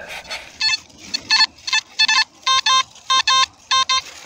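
Nokta Makro Simplex+ metal detector beeping: about seven short, high beeps, some in quick pairs, as the coil is swept back and forth. The beeps are the detector signalling a buried metal target under the coil.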